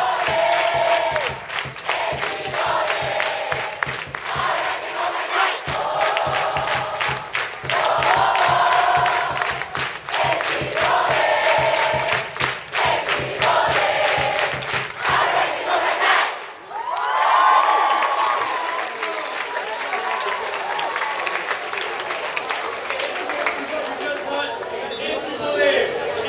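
A large group of students chanting a school cheer in unison, in short repeated phrases over rhythmic clapping. About 16 seconds in, the chant breaks off, and after one long, loud group shout the crowd's voices carry on more quietly.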